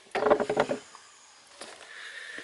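Handling noise: a short clatter of knocks and rattles lasting about half a second, with a fainter knock about a second and a half in, as the removed idle air control valve and camera are moved about.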